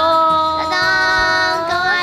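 Women's voices singing one long held note in a high, playful tone.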